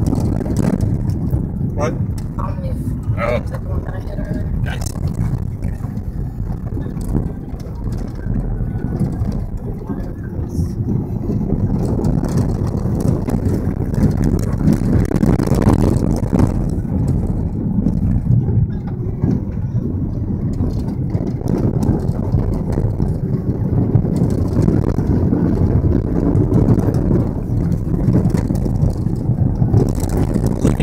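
Steady low rumble of a car's engine and tyres on an unpaved dirt road, heard from inside the cabin, with a few brief rattles in the first few seconds.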